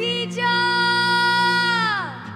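A woman's singing voice holding a long, high note over a steady low drone, after a short ornamented phrase; near the end the note slides down and drops away.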